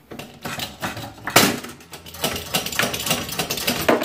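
A 6-ton hydraulic shop press being pumped down onto a disc cutter's punch to punch a hole through a quarter, with a run of irregular metallic clanks and creaks. The loudest is a sharp crack about a second and a half in.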